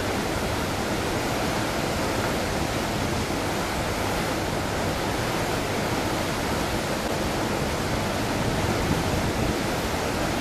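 Heavy whitewater of a large waterfall and its rapids rushing close by: a steady, dense noise that covers every pitch and does not change.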